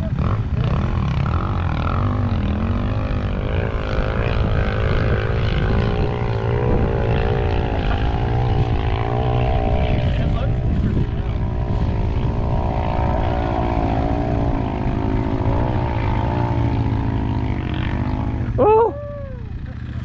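A dirt bike engine revving hard up a steep sand hill climb, its pitch rising and falling continuously as the rider works the throttle in the loose sand. Underneath it is the low, steady idle of a nearby two-stroke dirt bike.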